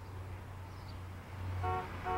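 A car horn gives a short toot near the end, over a steady low hum of street noise.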